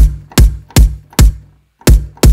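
Synthesized electronic kick drum from the Kick 2 plugin played over and over: five hits about 0.4 s apart with a short break before the last, each a sharp click on top of a deep sub boom that dies away quickly. It is a layered kick, a synthesized sub with sampled transient and rattle layers on top.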